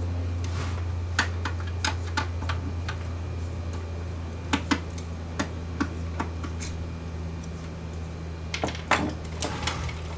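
Irregular clicks and clacks of metal and plastic parts of a cassette deck's chassis being handled during disassembly, with a small cluster near the end, over a steady low hum.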